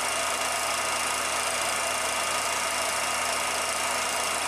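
A 16mm film projector running: a steady mechanical whirr with a thin, even high tone over it.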